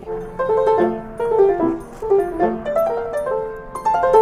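Upright piano being played: a quick run of struck notes with chords underneath.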